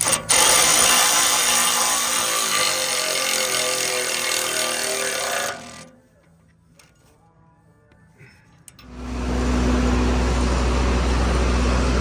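A power tool runs a bolt down on a Cat D5G dozer's track-tensioner cover for about five seconds, its pitch slowly falling, then stops. A few seconds later a steady low engine hum sets in and keeps going.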